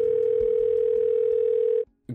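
A loud, steady electronic tone at a single pitch, like a telephone dial tone. It holds for nearly two seconds, then cuts off suddenly just before the end.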